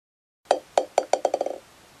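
Bouncing-ball sound effect: a ball bouncing to rest, about eight short pitched knocks that come quicker and quicker over about a second and then stop.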